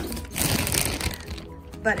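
Dry orchard hay being handled in a plastic bag: a short crackly rustle of stalks and plastic that fades out about a second in.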